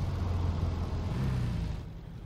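A deep, steady low rumble that cuts off abruptly just before the end.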